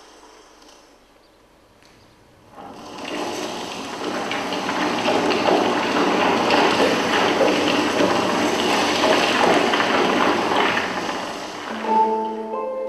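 A loud, even rushing noise on the projected documentary's soundtrack. It swells in after a couple of seconds of quiet, holds, and eases off near the end as music comes in.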